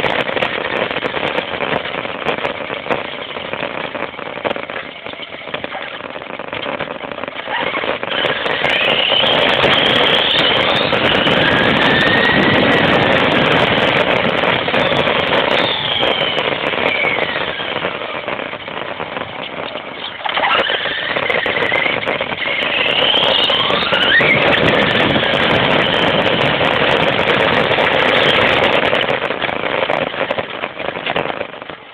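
Traxxas Stampede VXL's brushless motor and drivetrain whining on an 11.1 V LiPo at part throttle, the pitch rising and falling several times as the truck speeds up and eases off. Loud road noise from its foam tyres on asphalt comes through, heard from a phone riding on the truck.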